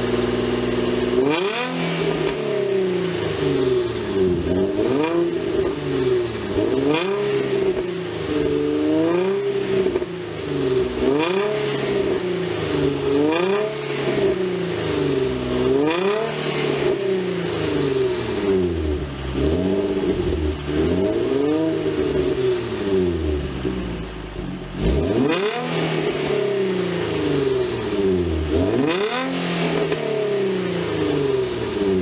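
Nissan 350Z's VQ35DE Rev Up V6 heard at the exhaust, breathing through a Motordyne XYZ Y-pipe and high-flow catalytic converter. After a brief steady idle it is revved again and again, each throttle blip rising and falling in pitch, about one every two seconds.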